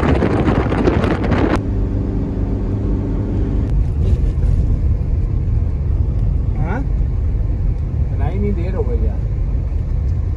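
Road noise heard from inside a moving car: a steady low rumble of engine and tyres, with a loud rush of wind through the open window that cuts off suddenly about a second and a half in. Faint voices come through in the second half.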